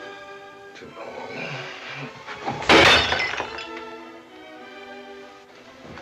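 A drinking glass smashing once, about three seconds in, over an orchestral film score of held notes.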